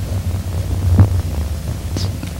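A steady low hum during a pause in speech, with one brief faint sound about a second in.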